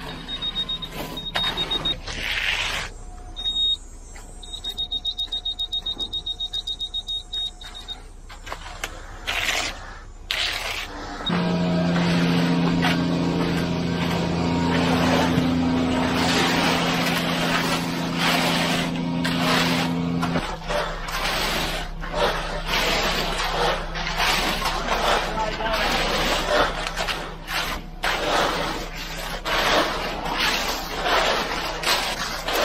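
Rapid runs of high-pitched electronic beeping in the first few seconds. Then a steady low hum that cuts off about two-thirds of the way in, followed by irregular scraping and knocking of rakes working wet concrete.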